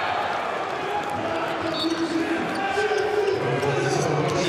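A handball bouncing on the indoor court over steady arena crowd noise and voices.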